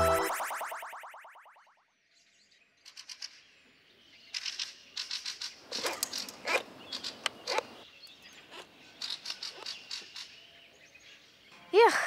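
The tail of an intro jingle fades away, and after a moment of near silence birds chirp in many short, high calls. A brief voice sound comes right at the end.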